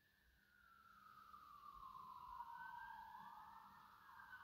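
Near silence but for a faint siren wailing, its pitch sliding slowly down and then back up.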